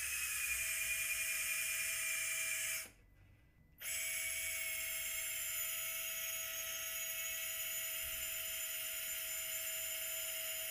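Surgical power drill spinning a guide wire through a tissue protection sleeve into a bone model, running with a steady whine. It stops for about a second around three seconds in, then starts again and runs on steadily.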